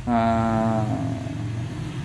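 A speaker's drawn-out 'aah' hesitation, held on one steady pitch for just under a second, followed by a steady low background hum.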